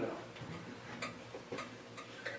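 Quiet room tone with a low hum and a few faint, scattered ticks and clicks.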